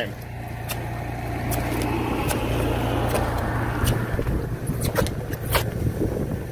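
Steady rush of pumped water pouring through a hose into corrugated drainage pipe, over a low steady hum, growing louder over the first couple of seconds. A few sharp clicks and knocks come through it.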